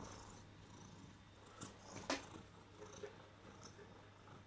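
A domestic cat purring faintly, close to the microphone, with two faint clicks about one and a half and two seconds in.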